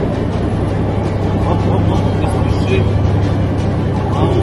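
Tank engine running with a steady low drone, heard from on top of the turret, with a voice faintly audible over it.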